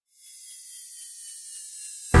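After a moment of silence, a high, hissing swell grows slowly louder: a riser transition effect in the edited soundtrack, building toward the music's return.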